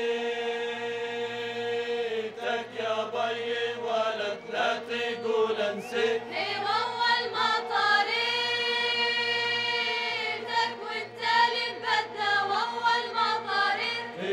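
Traditional Jordanian folk song sung by men's and women's voices, with long held notes at the start and again about eight seconds in, over a steady rhythmic beat.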